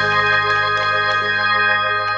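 Background music of sustained keyboard-like chords, held steady at an even level.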